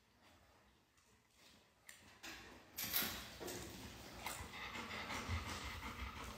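Dogs snatching at a treat on a tiled floor. It is nearly silent at first, then about two seconds in come sniffing, scuffling and small clicks, with a sudden loud noisy burst near the three-second mark and busy scuffling after it.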